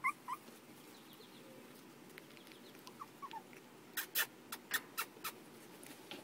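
Four-week-old Jack Russell Terrier puppies giving faint short squeaks and whimpers, with a quick run of sharp clicks about four seconds in.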